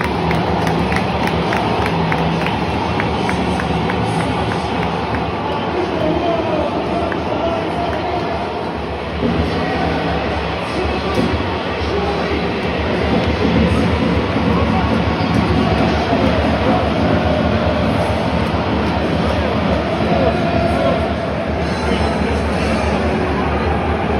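Football stadium crowd noise in the stands: a steady, loud din of many fans' voices and chatter.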